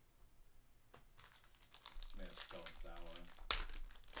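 Foil wrapper of a trading-card pack crinkling as it is handled and torn open, with a louder, sharper rip near the end.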